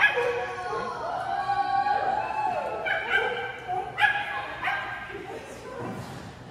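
A Brittany barking and yipping repeatedly in high, pitched calls, the first one loud and sudden at the start. One longer call falls in pitch about two and a half seconds in.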